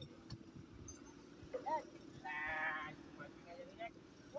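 A loud, drawn-out voiced call lasting just under a second, about two seconds in, over the steady low hum of the boat's engine running as it manoeuvres to dock. A few short, faint voice fragments come before it.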